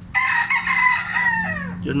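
A rooster crowing once: one long call of about a second and a half that falls in pitch at the end.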